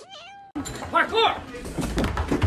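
A domestic cat gives a short meow that dips and rises in pitch. About half a second in, the sound cuts abruptly to a noisier recording, with two short arched cries near the one-second mark and scattered knocks.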